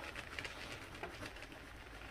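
Faint crackling and small ticks of a kitchen knife cutting through the bumpy rind of a very ripe, soft jackfruit.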